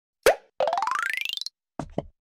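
Animated-logo sound effects: a sharp pop, then a rising glide made of rapid pulses lasting about a second, then two short pops near the end.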